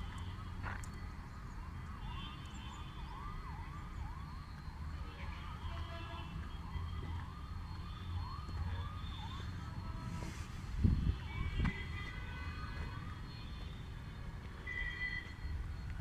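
A repeating warbling tone that rises and falls about twice a second and fades out about two-thirds of the way through. A low steady rumble runs under it.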